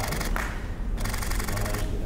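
Camera shutters firing in rapid bursts of fine, evenly spaced clicks: a short burst at the start and a longer one about a second in, over a steady low room rumble.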